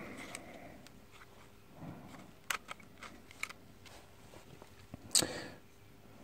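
Faint handling sounds of small plastic and metal angle-grinder parts: a few sharp ticks in the middle and a louder brief handling noise about five seconds in, over a faint steady hum.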